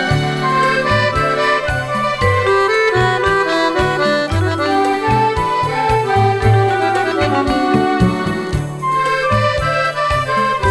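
Instrumental passage of a rumba played by a dance band, with the accordion carrying the melody over a steady, rhythmic bass line and no singing.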